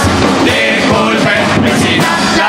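A murga chorus singing together in several voices, backed by the murga's percussion: bass drum thumps and cymbal crashes.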